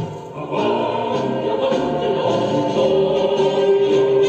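Choral music: a choir singing sustained notes, with a brief drop in level about half a second in before the singing swells again.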